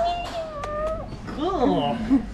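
A person's long, high vocal exclamation held on one steady pitch for about a second, followed by a shorter rising-and-falling "oh".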